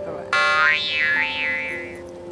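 A comic sound effect added in editing: a tone that comes in suddenly about a third of a second in, wavers up and down in pitch, and fades out over about a second and a half, over light background music.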